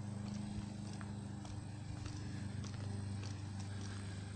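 Footsteps of a person walking on a paved sidewalk, faint regular steps about twice a second, over a steady low hum.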